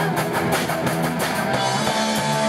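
Live rock band playing: electric guitars and bass over a drum kit. The drumming stops about one and a half seconds in, leaving held guitar chords ringing.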